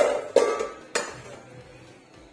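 Metal cookware clattering: three sharp clanks within about a second, the first two ringing briefly.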